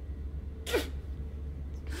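A man takes a short, sharp breath about two thirds of a second in, then a fainter one near the end, over a steady low hum.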